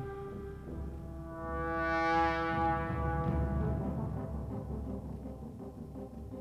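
Brass quintet music: a previous note dies away, then about a second in a new held chord swells, peaks near two seconds and fades slowly. It rings on in the long reverberation of a vast, empty gym.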